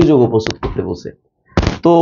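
A man lecturing in Bengali, with a short pause in the middle and a sharp click-like onset just before it.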